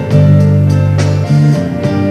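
Live band playing the instrumental intro of a ballad: guitar over held low bass and keyboard chords, with light percussion hits about once a second.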